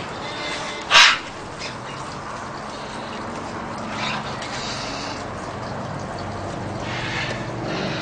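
Green-winged macaw giving one short, harsh squawk about a second in.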